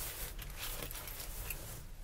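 Light rustling and small handling noises of objects being moved by hand, as in rummaging for a pen, over a low steady hum.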